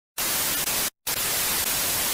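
Television static: a steady hiss of white noise, cut off by a brief silent gap about a second in.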